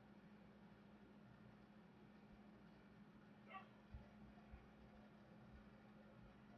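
Near silence: room tone with a steady low hum, a brief faint high squeak about three and a half seconds in, and a soft thump just after it.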